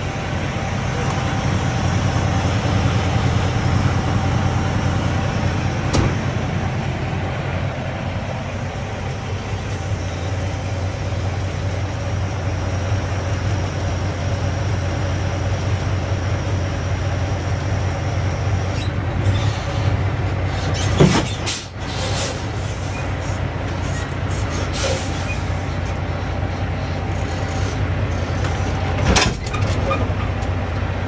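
Diesel engine of a semi tractor idling steadily, with a few short sharp clatters and hisses in the last third.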